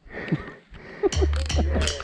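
Brief voices in the first half, then the low bass of a music track swells in about a second in and builds toward a loud rock backing track.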